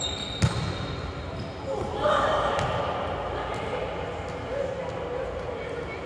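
A volleyball is hit with a single sharp smack about half a second in. From about two seconds in, players' voices call out, echoing in a large gym hall.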